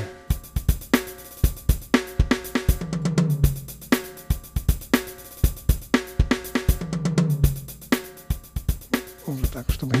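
Sampled acoustic drum kit from the Engine 2 sampler playing a looped MIDI groove of kick, snare, hi-hat and cymbals, with a short tom fill coming round about every four seconds. Each drum plays on its own mixer channel, and the snare runs through a Maserati DRM drum processor.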